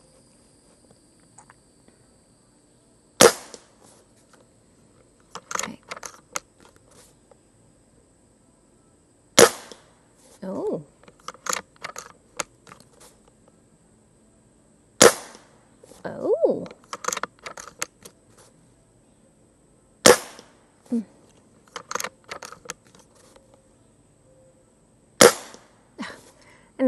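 Umarex Komplete NCR .22 nitrogen-cartridge air rifle firing five shots, one about every five seconds, each a short sharp report, with smaller clicks between the shots.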